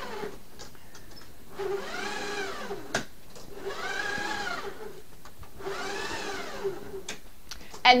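Silhouette Cameo Pro's blade housing pushed by hand along its rail on the unpowered machine, turning the carriage's stepper motor, which whines in a tone that rises and falls with each pass. There are three passes about two seconds apart, with a short knock as the housing reaches the end of a pass.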